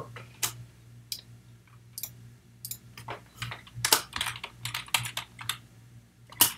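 Typing on a computer keyboard: irregular key clicks, sparse at first and coming in quicker runs in the second half, over a faint steady low hum.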